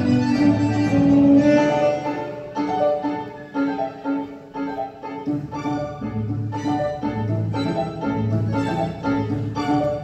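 A tango quintet plays a milonga live: piano, bandoneon, violin, viola and double bass. The music drops to a softer, sparser passage midway, then the bass pulse picks up again.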